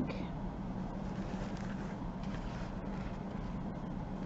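A steady low hum, with faint soft rustling of fabric as the lace-covered lampshade is turned by hand.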